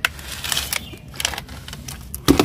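Cracked thin plastic flower pot being gripped and turned over by hand, its plastic crackling in a run of irregular clicks.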